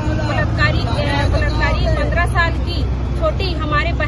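People talking over one another close to the microphone, with a steady low rumble underneath.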